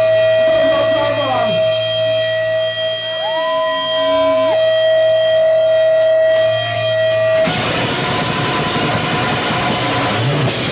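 Live noise-rock band: a steady droning tone over a low amplifier hum, with a pitch sweep looping up and down near the middle. About seven and a half seconds in, the full band crashes in, loud and noisy, with distorted guitars.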